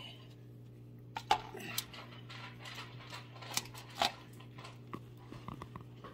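Loose pipe tobacco being pinched from a tin and pressed into a pipe bowl over an aluminium foil pie pan: scattered light rustles, ticks and taps against the foil, a little louder about a second in and again around four seconds.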